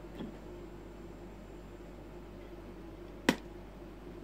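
A single sharp pop of the lips, about three seconds in, as a mouthful of air held in puffed cheeks is released: the 'breath and pop' cheek exercise used to learn circular breathing on the didgeridoo. Before it, only quiet room tone.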